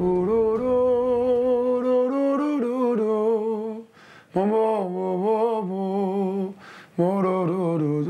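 A man singing a slow, heartfelt melody solo, in three long held phrases with vibrato and short breaths between them.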